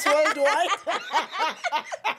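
A woman laughing: a quick run of short chuckles.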